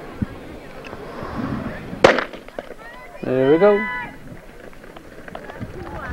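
Starter's pistol fired once about two seconds in, a single sharp crack that signals the start of a running race. About a second later a person shouts briefly.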